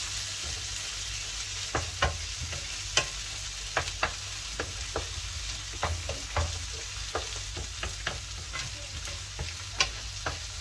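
A tomato and coriander masala sizzling in a non-stick pan while a wooden spatula stirs and scrapes it: a steady frying hiss with irregular sharp clicks of the spatula against the pan.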